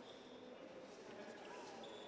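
Very faint, indistinct voices at a level close to near silence.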